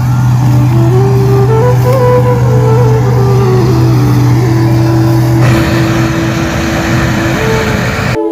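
Combine harvester harvesting rice, its engine a continuous low drone. A broader rushing noise from the machine grows louder about five seconds in.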